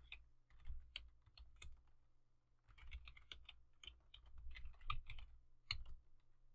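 Faint typing on a computer keyboard: short runs of keystrokes with pauses between, as an IP address and then a password are typed in.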